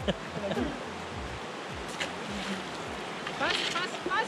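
Shallow river water rushing over stones and past a rubber-tube raft, a steady wash.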